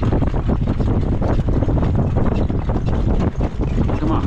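Wind rushing over the microphone, with the steady rumble of a jog cart's wheels and a harness horse's hooves on a dirt track, heard from the cart seat.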